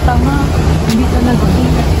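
Steady low rumble of a Toyota car's engine and road noise heard from inside the cabin as it moves slowly, with a single sharp click about a second in.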